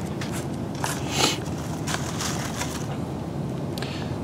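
Scattered crackling and rustling of dry leaves and snare-cable handling as a cable snare loop is pulled through and shaped by hand, with one stronger crackle about a second in, over a steady low hum.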